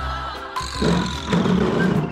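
Background music with held tones over a steady bass line.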